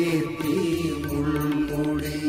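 Mixed choir of men and women singing a Malayalam Christian devotional hymn together, holding long notes over a steady keyboard accompaniment.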